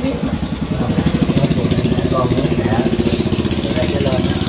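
A small engine idling with a steady, fast low pulse, under a man's halting, tearful voice.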